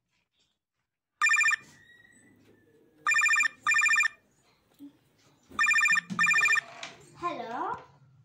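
Phone ringing with a loud electronic trilled ring: a single ring a little after a second in, then two double rings. A voice follows near the end.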